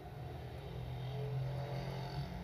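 A steady, low background hum with a faint higher tone above it, like a fan or motor droning.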